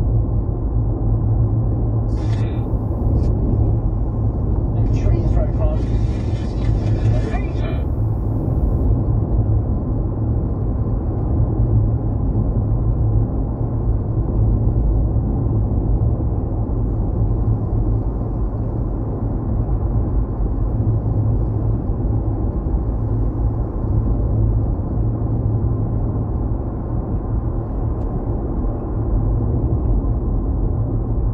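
Steady low road and engine rumble inside a moving truck's cab. A short hiss comes about two seconds in, and a longer one from about five to eight seconds in.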